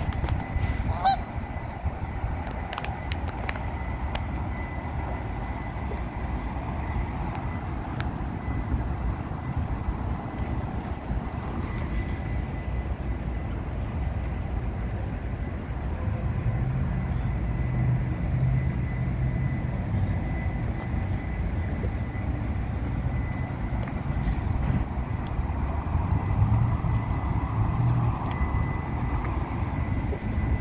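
Canada geese honking a few times over a steady low rumble.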